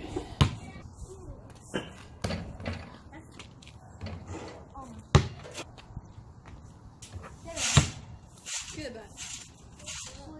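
A basketball bouncing on outdoor asphalt: a handful of irregular single thuds rather than a steady dribble, the loudest about five seconds in and again near eight seconds.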